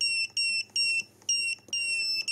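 An MT8206 digital oscilloscope multimeter's beeper sounding a quick, uneven series of short, high-pitched beeps, about five in two seconds.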